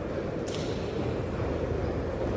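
Steady low background noise of an underground metro platform, with one sharp click about half a second in.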